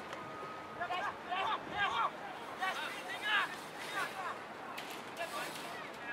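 Footballers shouting calls to each other across the ground, several short, distant calls one after another, most of them in the first half.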